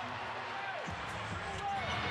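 Basketball arena sound from a game broadcast: a steady crowd murmur, the ball being dribbled, and a few short sneaker squeaks on the hardwood court near the end.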